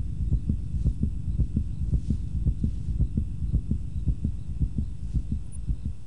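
Game-show countdown sound effect: an even run of low thumps, about five a second, marking the time left to answer.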